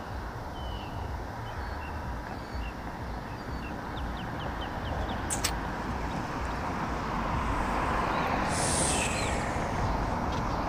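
Road traffic at an intersection, a steady rumble that grows louder toward the end as a vehicle comes closer, with a brief hiss about nine seconds in. A few short bird chirps sound in the first few seconds.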